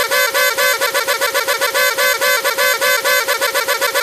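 Cartoon party blower tooting a reedy, buzzy note, chopped into a rapid stutter of about eight pulses a second.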